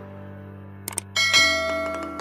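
Background music holding a low sustained chord; just over a second in, after two short clicks, a bright bell chime rings out and slowly fades.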